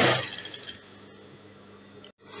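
A short burst of noise from working fabric at a sewing machine fades within the first half second. Quiet room tone with a faint steady hum follows.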